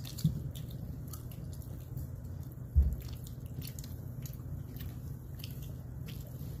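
Food being handled at a table: faint small clicks and crackles, with a dull knock just after the start and a louder thump a little before the midpoint, over a steady low hum.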